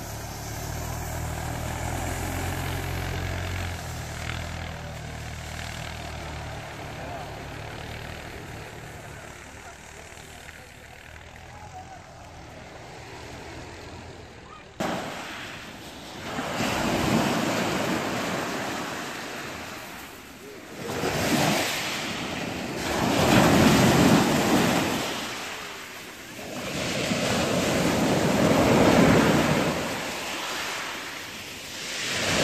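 A vehicle engine runs steadily at low pitch under distant surf. About halfway, after a sudden cut, waves break and wash up a pebble shore in loud surges that rise and fall every three to five seconds.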